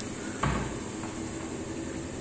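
Kitchen cabinet door pulled open by its chrome handle, with a single knock about half a second in.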